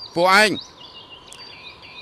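A man's voice says a short phrase, then faint bird chirps and whistles run on in the background.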